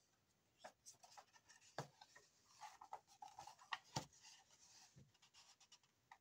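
Faint rustling of a sheet of paper being handled and bent into a curl by hand over a wooden desk, with a few soft taps, the sharpest about two and four seconds in.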